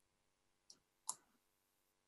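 Near silence broken by two faint computer clicks, about half a second apart in the middle: clicking to share the screen on a video call.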